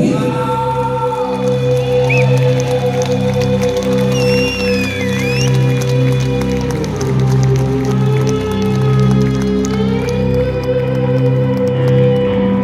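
Live rock band playing through the PA: a sustained chord held over low notes repeating about once a second, with a high sliding lead line about four seconds in.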